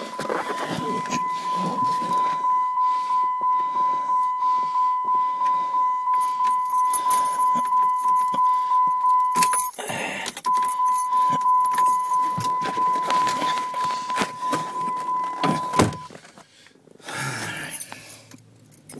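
Van engine cranking slowly on its starter in extreme cold without catching, with a steady high whine and a slow pulsing beat. It cranks for about ten seconds, pauses briefly, then cranks again for about six seconds and stops. This is a cold-soaked engine, its block heater left unplugged overnight, struggling to turn over.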